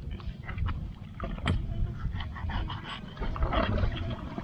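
Knife cutting through raw fish on a wooden board, with scattered short clicks and scrapes, the sharpest about one and a half seconds in, over a constant low rumble.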